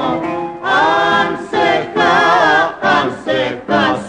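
Rebetiko song recording with the vocal line sung in several short, wavering phrases separated by brief breaks.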